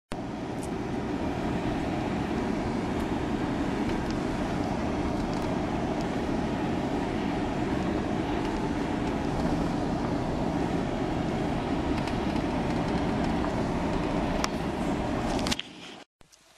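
Steady road noise heard from inside a vehicle's cab as it drives a dirt road: engine and tyres making a constant low rumble, with a few sharp clicks and rattles from the rough surface. The sound cuts off abruptly near the end.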